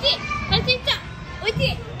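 High-pitched children's voices singing a short, repeated sing-song phrase over background music, with the chatter of children at play.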